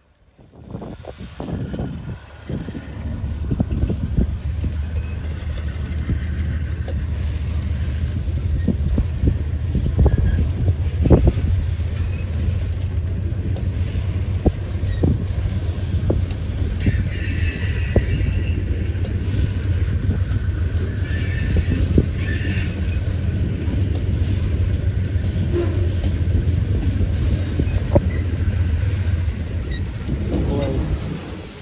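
Freight train of covered hopper cars rolling past at low speed: a steady low rumble of wheels on rail, with repeated clicks and knocks from the trucks. The rumble builds up over the first couple of seconds, and a higher-pitched whine comes and goes a few times in the middle.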